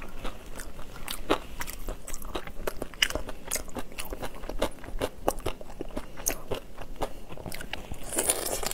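Close-miked eating of shell-on prawns: a rapid run of crunching and cracking from chewing and breaking the shells, with one sharp snap about three seconds in.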